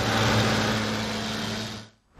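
Tractor engine running steadily, fading out just before the end.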